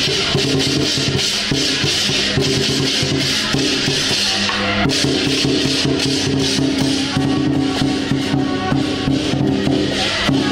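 Lion-dance music: loud, steady drumming and percussion with a high metallic wash over low sustained notes. The pattern shifts about halfway through, when the high wash thins and the low notes change.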